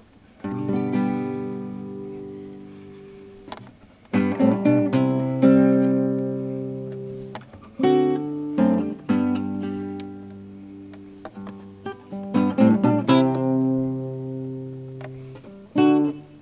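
Nylon-string classical guitar played solo, strummed chords each left to ring and fade, with a few quicker strums between them, as the instrumental lead-in to a worship song.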